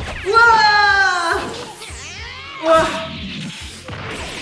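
Anime soundtrack: a character's loud shouted voice line over dramatic background music, with a second short shout near the three-second mark.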